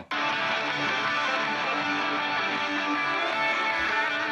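Electric guitar solo isolated from a full band recording by AI stem separation, played back with the rhythm guitar still audible under it. The solo bounces between two notes, and playback cuts back in after a brief break at the very start.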